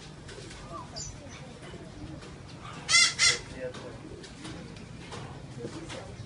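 Parrot giving two loud, harsh squawks in quick succession about three seconds in, over quieter background chatter.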